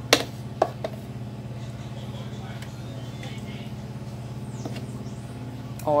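A few light knocks of a serving spoon against a clear plastic bowl as thick cream is spooned in, all within the first second, over a steady low hum.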